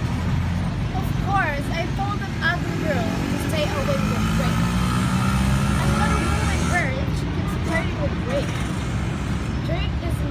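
Steady low rumble of road traffic, with one vehicle's engine louder for a couple of seconds around the middle.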